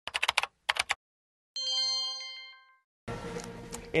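News-report intro sound effect: two quick runs of rapid ticking clicks, then a bright multi-tone chime that rings out and fades over about a second. Near the end comes a steady background noise with a low hum.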